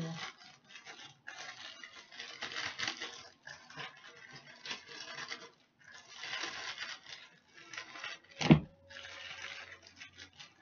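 Plastic bag rustling and crinkling in irregular bursts as chicken pieces are coated in dry breading inside it, with one sharp knock about eight and a half seconds in.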